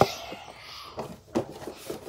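A cardboard shoebox being handled and set down: a sharp tap at the start, a soft scraping rustle of cardboard, then a single knock about a second and a half in.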